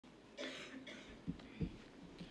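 A man coughs quietly once, briefly, near a pulpit microphone. Two short, dull thumps follow about a third of a second apart, from handling at the wooden lectern.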